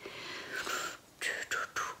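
A woman's breathy sounds without voice, in several short bursts, like whispering or audible breaths.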